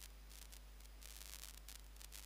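Near silence: a faint, steady low hum with soft hiss.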